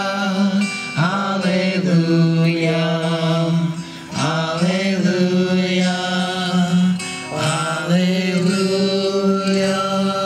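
Slow singing in long held notes by a man's voice, with acoustic guitar accompaniment, in phrases that start afresh about a second in, about four seconds in, and near the end.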